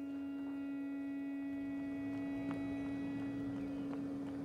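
A sustained low drone, one steady held tone with fainter higher tones above it that fade out about three seconds in. It is typical of a documentary's ambient music score.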